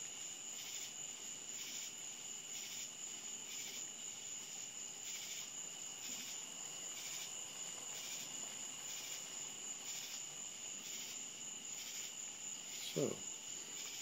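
Crickets chirping steadily in a high, evenly pulsing chorus, over a faint hiss from a pot of water at a rolling boil on an alcohol stove.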